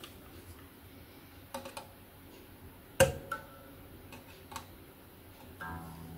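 Electric guitar strings being pressed and released against the frets, giving a few light clicks with one sharper click about three seconds in. Near the end a low string sounds and keeps ringing.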